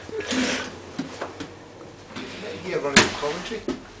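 An interior door clacks once, sharply, about three seconds in, among rustling handling noise and voices.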